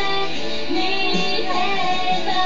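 Music: a female voice singing over a guitar accompaniment.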